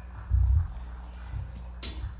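A few low thumps on the stage, then a single sharp click near the end, in the lull just before the band starts the next song.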